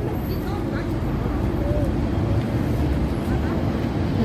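Outdoor street ambience: a steady low rumble with faint, scattered voices of passers-by.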